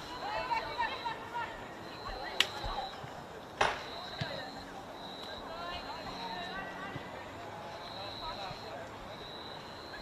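Live football match sound: faint shouts and calls from players on the pitch, with two sharp kicks of the ball about a second apart. A faint high-pitched tone comes and goes throughout.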